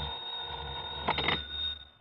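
Telephone bell ringing: one long, steady ring that cuts off sharply as the call is answered. It is a sound effect in a 1959 radio drama broadcast.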